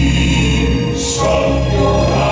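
Male Southern gospel quartet singing in harmony through microphones, over a steady low bass note. A sung 's' hisses about halfway through.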